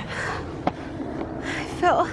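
Camera being handled, rubbing against a padded jacket, with a sharp clack about two-thirds of a second in. A short high whine that falls in pitch near the end.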